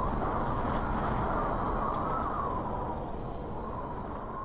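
A steady rushing noise with faint, slightly wavering whistling tones, an ambient sound effect that closes the track once the music has stopped. It slowly fades.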